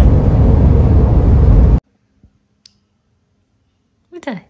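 Loud, steady road noise inside a moving car's cabin, heaviest in the low end, cutting off abruptly a little under two seconds in. Near silence follows, with a couple of faint clicks.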